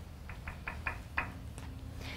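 A quick run of about six light knocks or clicks, a little under a second in all, over a low room hum.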